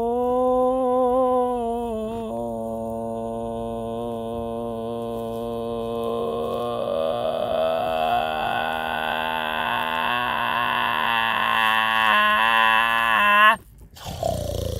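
A human voice humming or chanting one long note on a single pitch, wavering slightly at first and then held steady, growing brighter toward the end as the vowel opens, and stopping abruptly.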